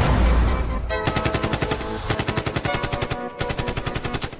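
Action-film soundtrack: an explosion with a deep rumble in the first second, then bursts of rapid automatic gunfire, about ten shots a second, stopping briefly twice, over background music.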